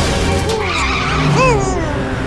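Cartoon car sound effects over the background music of the soundtrack, with a gliding sweep of tones about one and a half seconds in.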